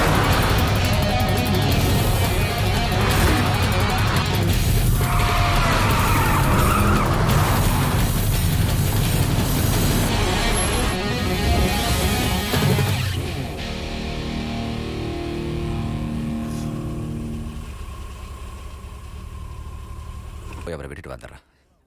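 Film car-chase soundtrack: speeding cars with engine and road noise under dramatic background music. About thirteen seconds in, the car sounds drop away, leaving music with long held notes that fades out near the end.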